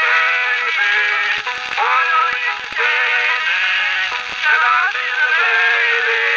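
Music from a 1903 acoustic phonograph recording, thin and narrow in range, with a handful of sharp clicks of surface noise breaking through it.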